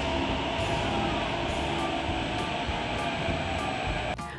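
Steady running noise heard from inside a Thomson-East Coast Line MRT carriage in an underground tunnel, with a few faint steady tones over the noise.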